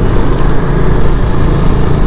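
Motorcycle engine running steadily at low revs as the bike rolls along slowly, heard from the rider's position.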